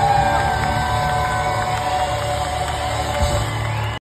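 Live rock band with drums holding a loud, steady final chord of a big ballad, with some crowd cheering over it.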